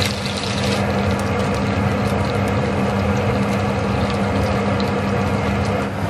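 Chicken pieces sizzling and crackling in a hot frying pan as they are turned with metal tongs, over a steady low hum.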